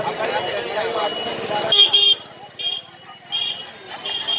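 Crowd chatter, then short high horn-like toots: two close together about halfway through, then two more spaced about three quarters of a second apart.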